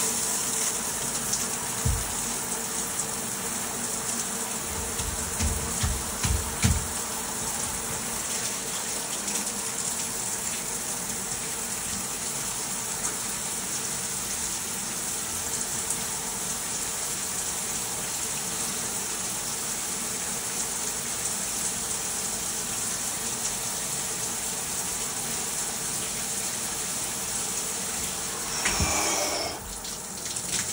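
Shower head spraying steadily onto a person's head and body and splashing in a tiled shower, with a few dull low thumps in the first several seconds.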